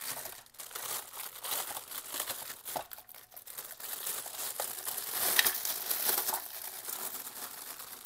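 Thin clear plastic bag crinkling and rustling as a plastic pooper scooper is worked out of it by hand, an irregular crackle throughout.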